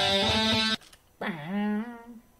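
Recorded electric guitar playing back in the DAW for about a second, then cut off abruptly. A brief voice sound held on one pitch follows.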